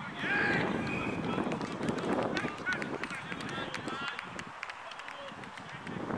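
Rugby players shouting and calling across the pitch, several raised voices in short bursts, over a low uneven rustle with scattered clicks.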